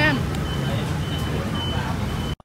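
Steady low rumble of street traffic, with a brief spoken word at the start.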